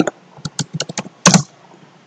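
Computer keyboard being typed on: a quick, uneven run of separate key clicks as a word is entered, with one louder keystroke a little past the middle.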